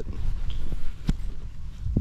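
Handling noise and rustling in dry leaves, with a low rumble on the microphone and two sharp clicks, about a second in and again near the end.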